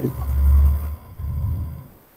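Two low, muffled puffs of breath blowing onto a microphone, the first louder, about a second apart.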